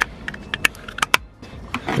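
A handful of short, light plastic clicks and taps from handling a small LED number-plate lamp unit, with two sharper clicks near the middle.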